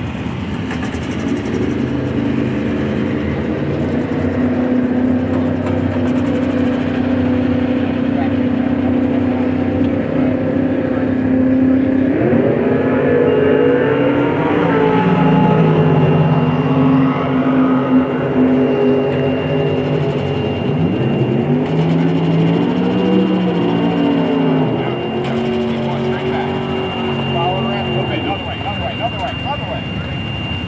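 Golf cart motor running as it tows a drag car, its pitch holding steady and then sliding up and down as the cart changes speed, with a thin steady high whine joining about halfway through.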